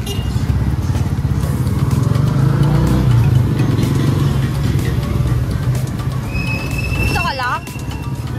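Steady low rumble of road and wind noise from riding in an open electric tricycle through traffic. Near the end a steady high tone sounds, and a high warbling call sweeps quickly down in pitch.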